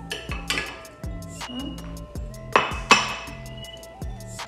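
Background music with a steady beat, over a few clinks of a glass container against a stainless steel mixer bowl as sugar is tipped in. The sharpest clink comes near three seconds in.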